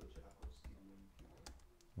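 Faint computer-keyboard typing: a quick, uneven run of light keystroke clicks as a word is typed.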